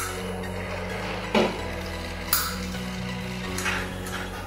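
Metal portafilter knocks and clinks against an espresso machine and grinder: three sharp knocks about a second apart, the first one, about a second in, the loudest and deepest. Background music plays throughout.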